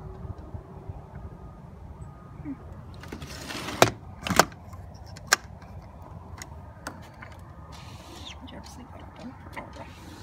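A sliding screen door being handled: a brief scraping rush, then a few sharp clicks and knocks from its handle and frame, the loudest around the middle, over low rumbling handling noise.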